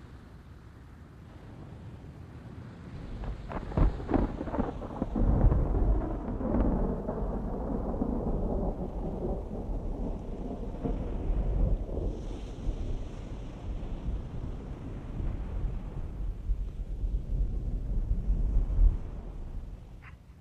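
Thunder over rain: a sharp crack about four seconds in, then a long, low rolling rumble that dies away near the end.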